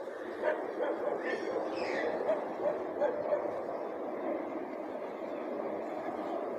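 Faint outdoor street background with a distant dog barking.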